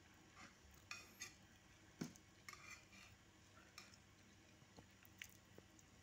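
Near silence with faint pencil scratches on paper and a few small knocks on a wooden table, the sharpest knock about two seconds in.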